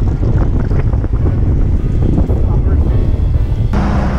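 Wind buffeting the microphone of a camera riding along on a moving road bicycle: a loud, steady low rumble. Near the end it changes to a brighter rushing hiss with a faint steady hum.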